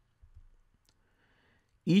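Near silence with a few faint clicks, then a voice begins speaking near the end.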